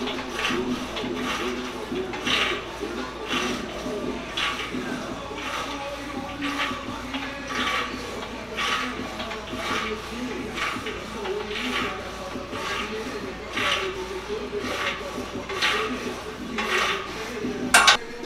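Smith machine bar and weight plates clinking in a steady rhythm, about once a second, as the loaded bar is shrugged up and down rep after rep.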